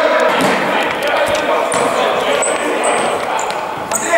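Futsal play in an echoing sports hall: players' voices, ball kicks and several short high squeaks of shoes on the court floor in the second half.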